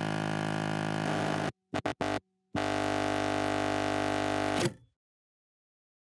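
Electronic intro tones: a steady buzzing tone breaks off about one and a half seconds in, three short blips follow, then a second steady buzz that stops abruptly shortly before the end.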